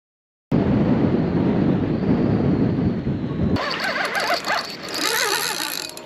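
Wind buffeting a camera microphone, a loud rumble that starts after a brief silence and stops suddenly about three and a half seconds in. Then quieter wind with wavering, voice-like pitched sounds.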